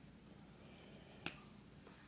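A single sharp click from a ballpoint pen being handled, about a second in, over faint room tone.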